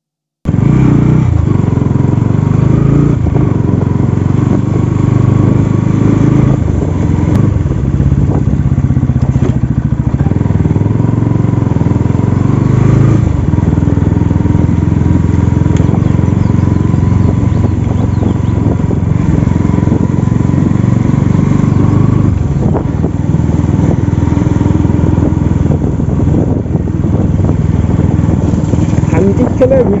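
Single-cylinder engine of a Bajaj Pulsar NS200 motorcycle running steadily at low speed while riding, with a heavy low rumble throughout. It starts abruptly about half a second in.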